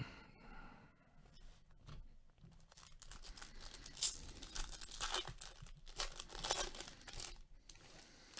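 Faint crinkling tears of a trading-card pack wrapper being ripped open and pulled off. There is soft rustling at first, then a run of short crackly tears from about halfway through.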